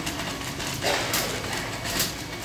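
Metal wire shopping cart rolling over a hard store floor, its basket rattling and clicking steadily, with a louder rattle about a second in.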